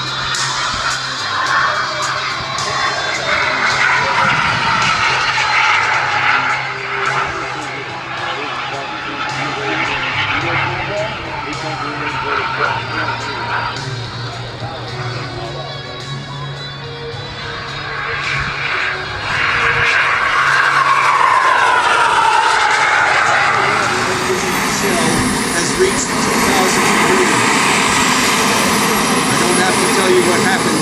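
Turbine engine of a radio-controlled model F-15 jet running in flight, a loud rushing whine that sweeps down in pitch as the jet passes, strongest about twenty seconds in. Background music plays underneath.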